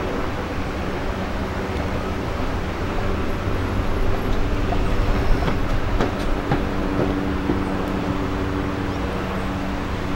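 A steady mechanical drone with a low hum, like a distant engine, swelling a little about halfway through. A few faint knocks come near the middle.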